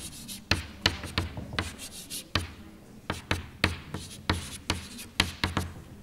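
Chalk writing on a blackboard: a quick string of short taps and scrapes, about three a second, as lines are drawn.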